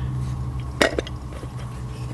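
A single sharp click a little under a second in, as the speedometer's metal housing and glass are handled, over a steady low hum.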